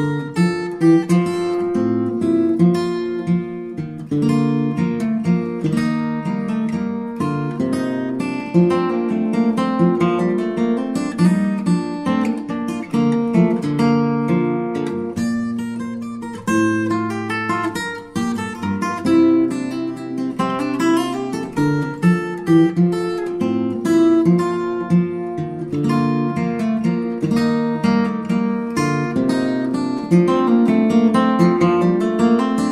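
Background music: acoustic guitar playing, with plucked and strummed notes.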